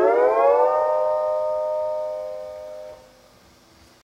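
Double-neck Fender Stringmaster lap steel guitar: a chord slides up in pitch under the steel bar, settles within the first second and rings on, fading, until a hand damps it about three seconds in.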